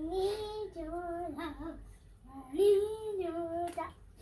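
A young girl singing a short tune in two held phrases, each about a second and a half long, with a brief break between them.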